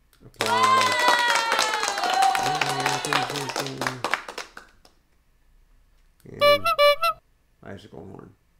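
Prerecorded sound-effect clips played from Ecamm Live's sound-effects panel. The first runs about four seconds, with a voice-like tone gliding downward and then breaking into shorter notes. Two short effects follow near the end.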